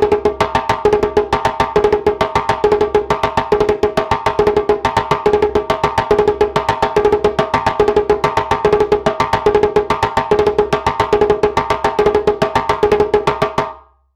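Djembe played with bare hands in a fast, even, repeating phrase of four tones followed by three slaps, the hands alternating one after the other. It has a ternary, 12/8 feel and fades out near the end.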